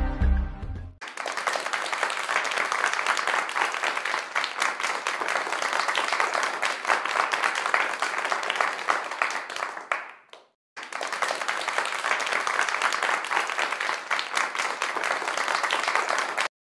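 Music ends about a second in, then applause: many hands clapping steadily. It breaks off briefly at about ten seconds and starts again.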